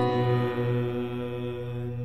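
A low piano chord ringing on and slowly fading, its bass note pulsing gently as it dies away.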